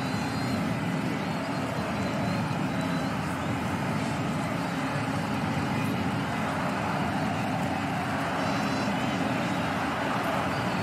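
A steady, even background noise with no speech, strongest in the low and middle range and unchanging in level.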